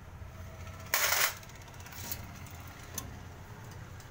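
Galvanized steel electrical switch boxes being handled: a short metallic clatter about a second in, then a couple of faint clicks.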